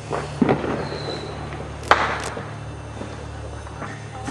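Handling noise of hands and a knife working at a plush stuffed toy: a few sharp clicks and knocks, the loudest about two seconds in, over a steady low hum.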